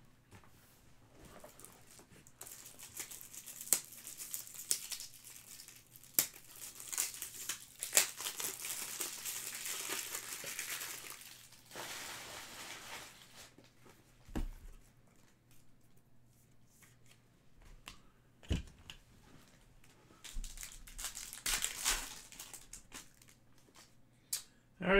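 Crinkly packaging wrapper being torn open and handled: a long stretch of crackling crinkle in the first half, a couple of soft knocks, then more crinkling near the end.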